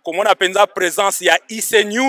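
Only speech: a man talking in quick phrases into a handheld microphone, with short pauses between them and no background music.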